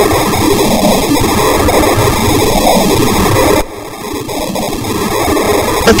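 Loud, chaotic, noise-heavy electronic music with no vocals. It drops suddenly a little past halfway, then swells back up.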